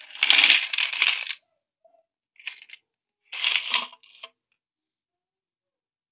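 Coins sliding and clinking inside a plastic soccer-ball digital coin bank as it is turned upside down, in three bursts: a long one at the start, a short one about two and a half seconds in, and another about a second after that.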